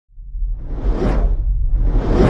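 Whoosh sound effects for an intro logo animation: a swoosh swelling to a peak about a second in and a second one building near the end, over a steady deep rumble.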